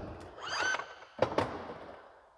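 Power-folding third-row seats of a 2019 Cadillac Escalade moving back upright: a short rising motor whine, then a sharp clunk as a seatback latches, with the mechanism noise fading out after it.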